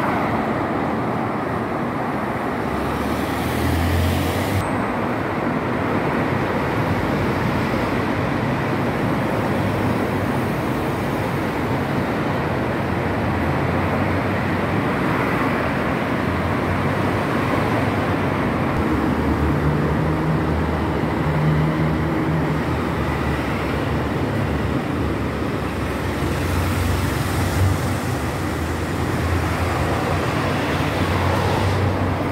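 Steady city road traffic: cars driving past close by, their engine hum swelling now and then over a constant rush of traffic noise.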